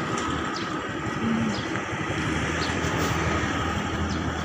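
Motorcycle engine running steadily under way, heard from the bike, with the noise of street traffic around it.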